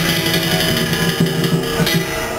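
Chinese ritual music from a small temple ensemble: a steady melody of held notes changing pitch, over a few percussion strikes.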